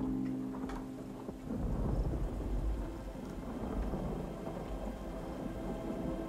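A held ambient-music chord fades away in the first second and a half, giving way to a low, crackling rumble like distant thunder and rain, the atmospheric sound-effect bed that opens an ambient track.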